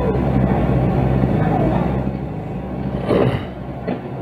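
Car engine idling with a steady low hum, picked up by the dashcam inside the stopped car.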